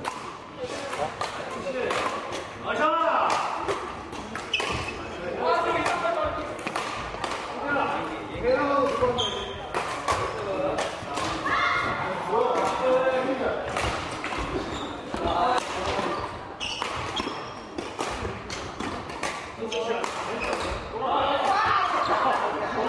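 Several people talking and calling out, echoing in a large gymnasium, with many sharp knocks and taps from badminton play: rackets hitting shuttlecocks and shoes on the wooden court floor.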